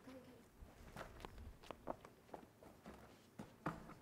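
Faint footsteps and a scattered series of soft knocks and taps as stage props, artificial-grass mats and white pillars, are carried and set down on a studio floor; the sharpest knock comes near the end.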